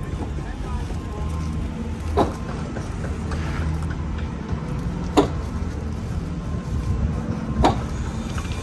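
A steady low outdoor rumble with three sharp clicks or knocks, spaced a few seconds apart, as a bricklayer's string line is handled and fixed against concrete blocks.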